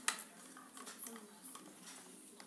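Faint handling noise: a sharp click at the start, then a few light clicks and rustles as a small plastic satellite-finder box and its cable are handled.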